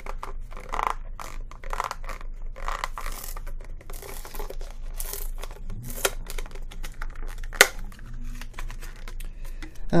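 Tape being peeled off a clear plastic clamshell blister pack and the pack being worked open: irregular crinkling and scraping with sharp plastic clicks, the sharpest about six and seven and a half seconds in.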